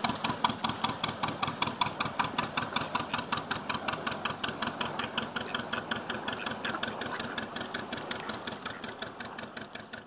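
A narrowboat's diesel engine chugging steadily at about five beats a second, slowly fading away.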